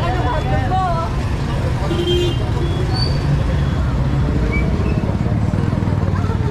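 Street traffic: motorcycle and tricycle engines running in a steady low rumble, with people talking in the street.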